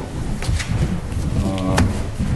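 A man's voice making a low, drawn-out hesitation sound while searching for words, strongest in the second half, with a couple of light clicks.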